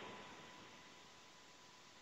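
Near silence: faint line hiss in a pause between speech.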